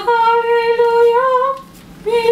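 A woman singing a gospel chorus unaccompanied, holding one long note for about a second and a half that rises slightly at the end before breaking off.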